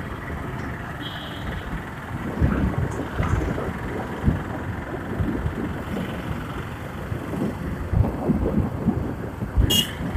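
Wind buffeting the microphone on a moving motorcycle, over the running of the bike and the surrounding traffic. A short high beep comes about a second in, and a sharp click near the end.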